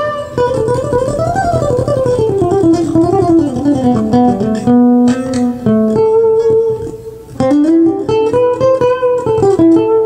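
Acoustic guitar played solo: fast picked single-note runs that climb and fall in pitch, with a few held notes in the middle and a short pause about seven seconds in before the runs resume.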